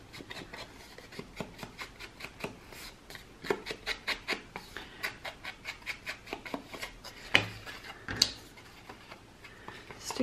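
Ink blending tool's foam pad rubbed and dabbed along the edges of a card tag: a quick run of soft, dry scuffs, two or three a second, with two sharper knocks near the end.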